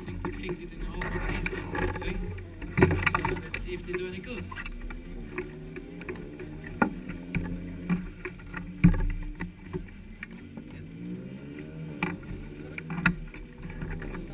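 Sharp clicks and knocks of a racing car's safety-harness buckles and belts being fastened and adjusted around the driver, heard over a steady low rumble and voices.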